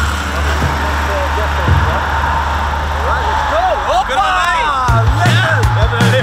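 A vehicle engine idling with a steady low hum. Excited voices break in about three seconds in, and background music with a steady beat starts about five seconds in.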